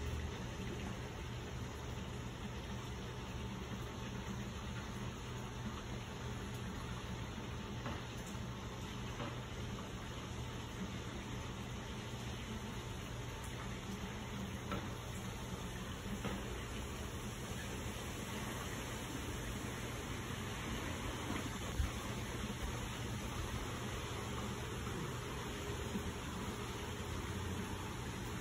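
Steady wind noise: an even hiss with an unsteady low rumble on the microphone.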